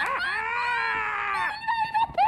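A woman's high-pitched excited squeal of delight, one long held note that rises slightly and falls away after about a second and a half, followed by a short higher yelp near the end.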